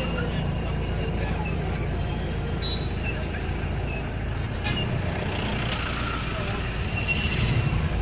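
Road traffic heard from inside a car's cabin: a steady low rumble of engines from the car and the motorbikes and vehicles around it, with faint voices from people outside.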